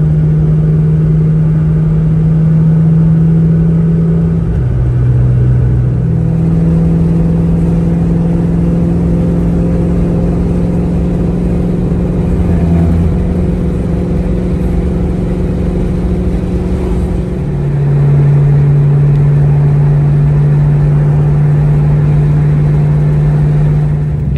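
2003–04 Ford Mustang SVT Cobra's supercharged 4.6-litre V8 running at a steady highway cruise, heard from inside the cabin. The drone holds an even pitch, dropping briefly about five seconds in and settling a little lower for the last several seconds.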